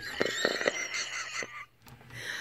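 A woman laughing under her breath: breathy and wheezy, with little voice and a few small mouth clicks, dying away near the end.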